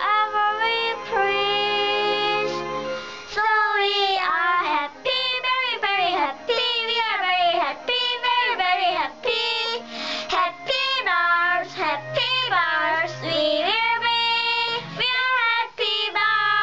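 A child singing a children's song over backing music, the voice sliding up and down in pitch from note to note.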